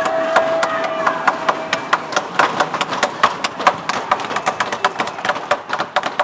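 Quick, irregular sharp knocks, about five a second: several people's footsteps running on a hard floor. A steady high tone is held through the first couple of seconds.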